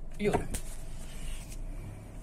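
Toyota Yaris engine idling, heard from inside the cabin as a steady low hum, with a couple of sharp clicks from the camera being handled.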